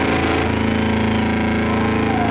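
The band's last chord ringing out through the amplifiers as a steady sustained drone at the end of a song, with audience cheering and a few high whistles.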